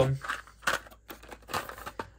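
A small cardboard minifigure box being handled and picked up, with a few short rustles and scrapes, about a second in and again near the end.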